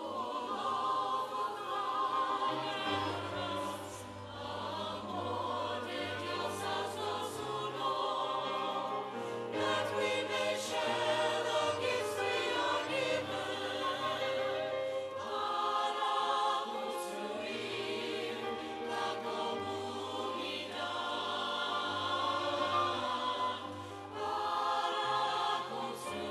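Church choir singing with instrumental accompaniment, held low notes changing every second or two beneath the voices.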